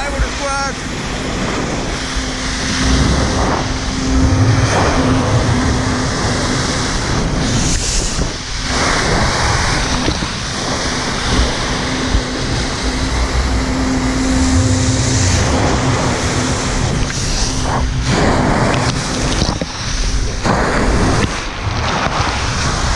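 Flyboard water jets rushing steadily, with wind buffeting the microphone, over a steady hum from the jet-ski engine pumping water up the hose. The hum and a low rumble swell twice, about four and about fourteen seconds in.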